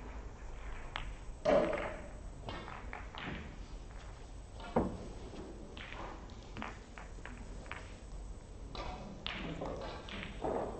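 Snooker balls clicking and knocking as they are handled and set on the table, scattered through the hall's low hum; the loudest knock comes about a second and a half in and a sharp click near the middle.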